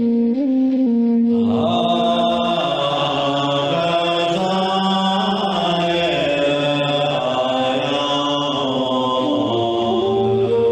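A man chanting a mantra in long, held notes, the pitch stepping slowly from one note to the next.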